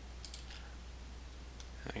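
Two faint computer mouse clicks in quick succession about a quarter second in, with a steady low electrical hum underneath.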